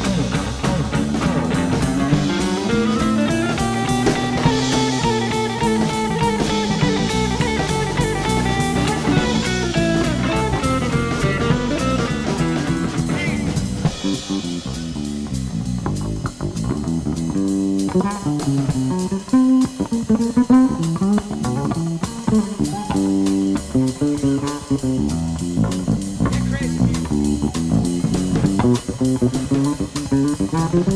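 A live rock band playing a bluesy instrumental passage on electric guitar, bass and drums. About halfway through, the sound thins out and the guitar and bass notes stand out more on their own.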